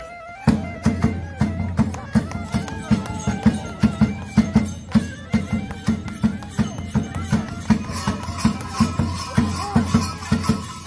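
Traditional Romanian folk music: a drum beating a quick, steady rhythm under a wavering wind-instrument melody. The music picks up about half a second in after a brief lull.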